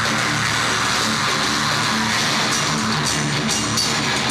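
Metal band playing live: distorted electric guitars and drums, with cymbal hits in the second half.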